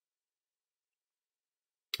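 Near silence: the audio track is gated to nothing, and a man's voice begins only at the very end.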